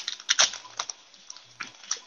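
A freshly torn foil booster pack and its trading cards being handled: a scattered run of light crinkles and small clicks.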